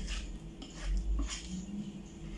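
A kitchen utensil scraping and clicking against a mixing bowl as thick brownie batter is pushed out of it into a baking pan, in several short strokes.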